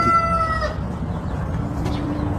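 A long, held animal call with several steady overtones fades out in the first second, leaving a steady background hiss.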